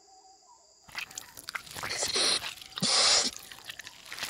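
Wet mouth sounds of someone licking and tasting, with breathy exhales, in a few bursts that start about a second in.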